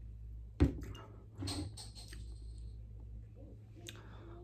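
Glass drinking jar set down on a hard surface: one sharp knock about half a second in, followed a second later by a short breathy sound.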